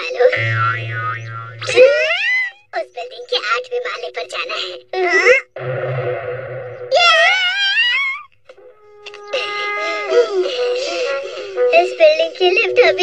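Cartoon soundtrack: background music under a character's wavering, wailing voice, which comes in several bursts with a short break about eight seconds in.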